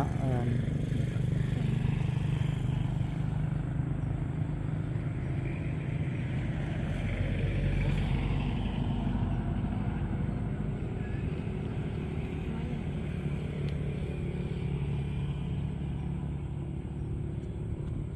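A steady low motor rumble with a faint hum, swelling slightly around eight seconds in.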